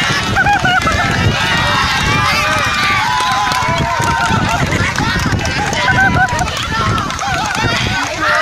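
A crowd of onlookers calling out and talking over one another, many voices at once with no single voice standing out, over a constant low rumble.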